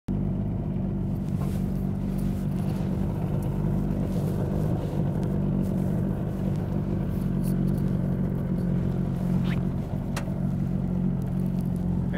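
Small outboard motor on an aluminium boat running steadily at a constant, low speed.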